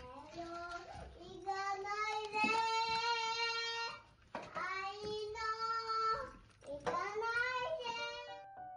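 A high voice singing long, held notes in three drawn-out phrases, each sliding up into its note, with breaks about four seconds in and near seven seconds.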